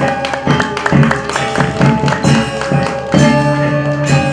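Balinese gamelan playing: quick strokes on bronze metallophones ring out over drum beats, with some longer ringing tones held near the end.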